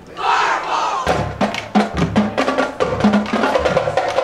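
A brief burst of many voices shouting together just after a short pause, then the marching band plays on, with drum hits and sustained horn chords.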